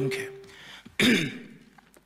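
A man clears his throat once, a short sharp sound about a second in, between spoken sentences at a desk microphone.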